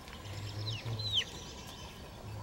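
Young chickens peeping: two or three short, high chirps that slide downward in pitch, about a second in.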